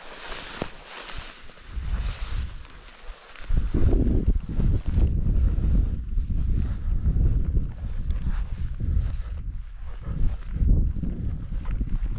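Wind buffeting the microphone in irregular low gusts, growing much stronger about three and a half seconds in, over a lighter hiss during the first few seconds.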